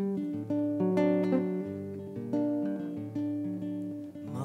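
Nylon-string acoustic guitar picking a melody over held bass notes.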